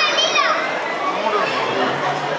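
Young children's high voices chattering and calling out over a murmur of adult voices.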